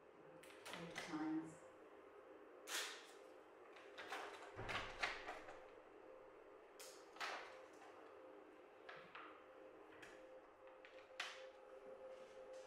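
Faint handling sounds of ECG electrodes being fitted: crinkling of the plastic packet, tabs peeled off their backing sheet and lead clips snapped onto the electrodes, about a dozen short rustles and clicks, the loudest around one, three, five and seven seconds in. Under them runs a steady faint hum.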